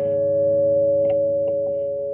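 Steel-string acoustic guitar notes left ringing after a struck chord, several clear, pure tones sustaining and slowly dying away.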